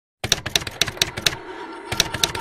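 Typewriter-style key clacks, sharp and evenly spaced at about four a second, stopping briefly about a second and a half in before one more strike.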